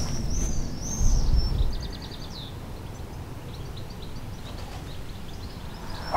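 A songbird singing: a few high, clear arching phrases, then a short fast trill about two seconds in, followed by fainter scattered chirps, over a low rumble that eases after the first two seconds.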